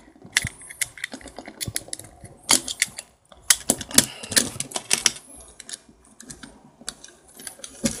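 Plastic toy construction pieces being handled and fitted together, clicking and snapping in an irregular string of sharp clicks, with a brief pause about three seconds in.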